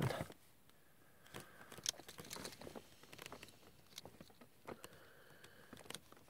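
Faint clicks, ticks and rubbing of small snap-fit plastic model-kit parts being handled and pressed together, a dozen or so small ticks spread irregularly.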